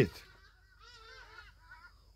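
Faint bird calls: a short run of several brief pitched notes about a second in, well below the level of the nearby voice.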